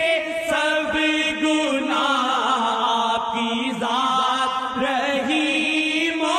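A solo voice chanting an Urdu devotional naat asking forgiveness of sins, in long melismatic phrases that glide and hold, over a steady sustained drone.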